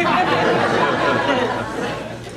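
Comedy club audience laughing after a punchline, a dense wash of many voices that dies away toward the end.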